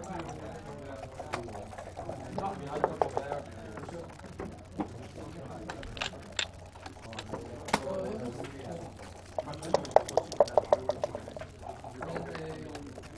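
Backgammon play: checkers clicking down onto the board, and dice rattling in a shaken dice cup, a short rattle about three seconds in and a longer, louder run of about ten quick clicks near the end before the roll.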